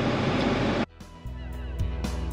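Steady engine drone of a loader tractor heard from inside its cab, cut off abruptly a little under a second in. Background music with bass and guitar begins just after.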